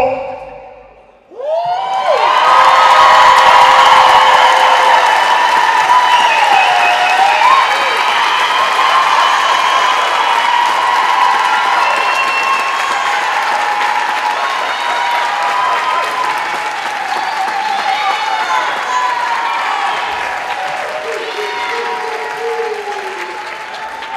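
Audience applause and cheering with shouted whoops, breaking out about a second and a half in and slowly dying down.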